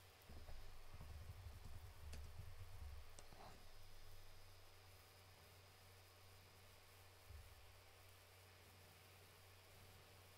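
Near silence: room tone with a steady low hum and a few faint computer-mouse clicks in the first few seconds.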